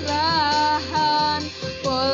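A girl singing solo over instrumental backing music, holding long notes that bend slightly in pitch, with two short breaks between phrases.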